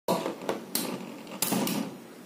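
Two battle tops, the metal-wheeled Beyblade Big Bang Pegasus and the Nado top Delver Mecha, spinning and scraping on a clear plastic Beyblade stadium floor, with about five sharp clacks as they strike each other or the stadium wall.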